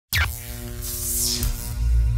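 Electronic intro sting with deep pulsing bass. It starts suddenly with a quick falling sweep, holds sustained synth tones, and has a whooshing sweep about a second in. The bass grows heavier near the end.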